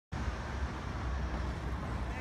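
Steady city street noise: a low rumble of road traffic.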